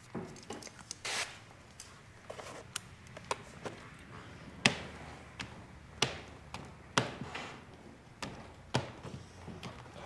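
Hand squeegee working wet tint film onto a car door window: soft rubbing strokes on the glass and a run of sharp knocks and taps against the glass and door frame, the loudest a little under halfway.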